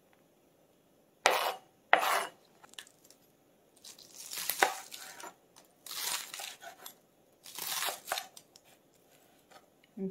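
Chef's knife slicing through a bundle of green onions onto a plastic cutting board: two short sharp cuts a little over a second in, then three longer slicing strokes about two seconds apart.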